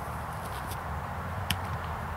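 Outdoor background with a steady low rumble, faint scuffs of feet moving on grass, and a single sharp click about one and a half seconds in.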